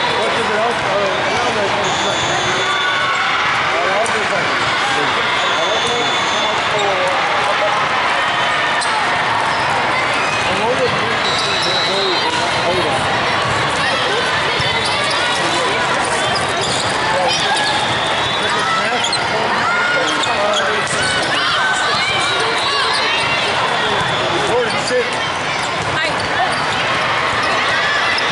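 Volleyball tournament hall: a steady din of many voices and players' calls, with volleyballs being hit and bouncing on the courts. Brief high tones sound a few times.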